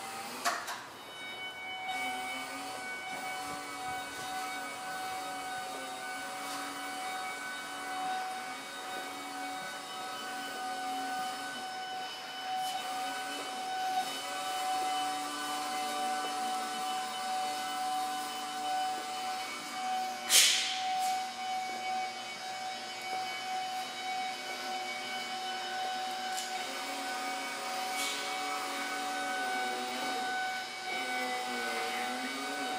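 Caterpillar forklift driving, its motor giving a steady whine with lower tones that rise and fall as it moves. A click comes just after the start, and a loud clank about twenty seconds in.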